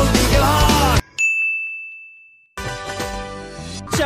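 Loud rock-style music with singing cuts off abruptly. A single high, bell-like ding then rings out and fades over about a second. A softer music track begins after a brief silence.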